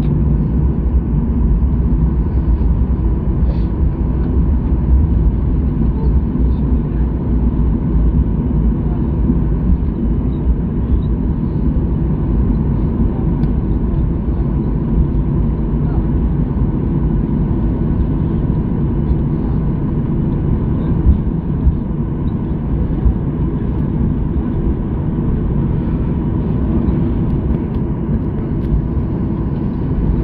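Cabin noise of a Boeing 737-800 rolling out and slowing after touchdown. The CFM56-7B engines run at low power over the rumble of the wheels on the runway, giving a steady, deep noise with no sharp events.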